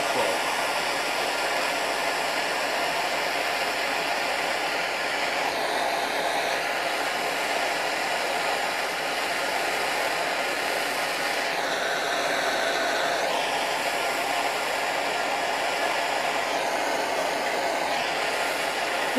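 Handheld gas torch burning with a steady hiss, its flame heating a soldered spot on steel to melt off the leftover solder. The hiss shifts slightly in tone twice.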